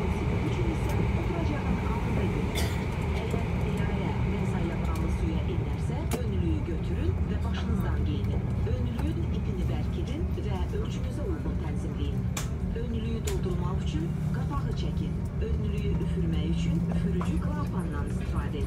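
Steady low hum in the cabin of an Airbus A340-500 airliner, with indistinct murmur of passengers talking.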